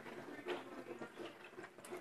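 Quiet room tone with a few faint, soft noises of beer being sipped from a small tasting glass.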